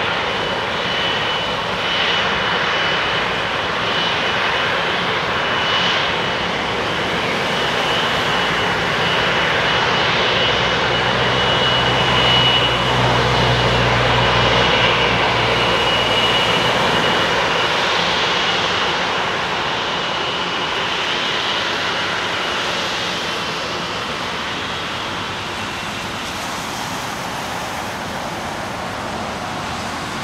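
Boeing 777-200ER's GE90 turbofans at taxi power, a steady jet roar with a high whistling whine. The rumble swells about halfway through as the aircraft passes closest, then eases slightly toward the end.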